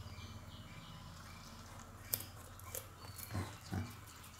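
Indian crested porcupine gnawing on a small white object held in its paws. A few faint sharp clicks and soft low sounds come in the second half, over a steady low hum.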